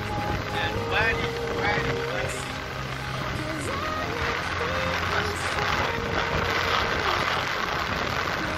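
Steady road and wind noise from a moving car, with a song playing over it: held notes and a singing voice, most prominent in the first half.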